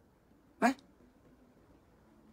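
A man's single brief vocal sound, a short rising syllable a little over half a second in, between long pauses with no other sound.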